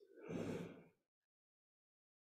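A man's short audible breath into a close microphone, lasting under a second, between spoken sentences.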